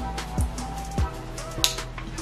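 Background music with a steady beat: deep drum hits that drop in pitch, with sharp ticks between them over held tones.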